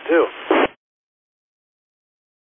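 A man's voice heard over amateur radio repeater audio, thin and narrow-band, finishes a word and cuts off abruptly less than a second in as the transmission ends, leaving dead silence.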